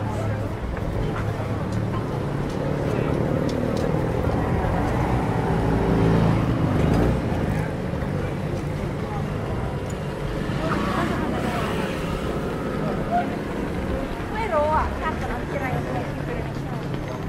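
Street traffic: a motor vehicle's engine running close by with a steady low hum, swelling to its loudest about six to seven seconds in and then easing off, mixed with the voices of passers-by.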